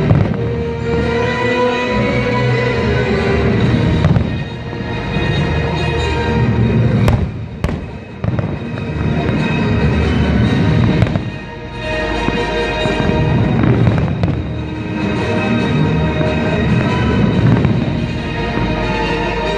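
Aerial fireworks bursting, deep booms with a few sharp cracks, over music that plays throughout.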